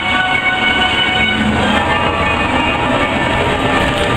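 Peter Pan's Flight ride vehicle moving along its overhead track: a steady, loud rumbling noise, with the ride's music fainter underneath and fading during the first part.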